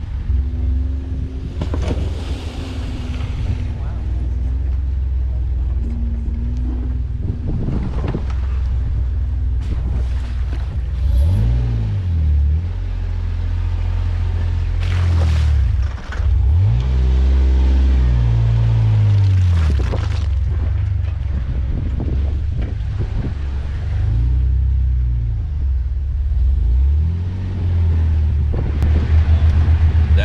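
Jeep engine running at crawling speed over trail ruts, its revs rising and falling several times as it is throttled through the washouts.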